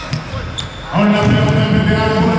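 A basketball being dribbled on a hardwood court, a few bounces in the first second, then a man's voice comes in loudly over it.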